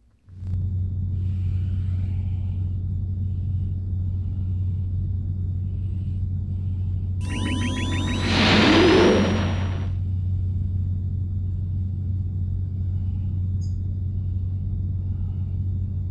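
Sci-fi outro sound effect: a steady low rumble comes in just after the start, and a whoosh of rising, sweeping tones about seven seconds in is the loudest part, dying away by about ten seconds.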